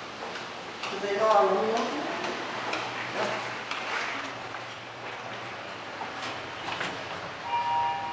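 Mitsubishi traction elevator giving a short, steady electronic tone of two close pitches near the end, with faint clicks before it. A brief voice is heard about a second in.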